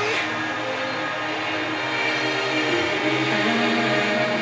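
FM radio broadcast playing a station promo's music bed, with sustained notes and a short swoosh right at the start.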